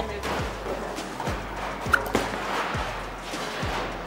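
Bowling ball rolling down the lane, under background music with a steady beat about twice a second.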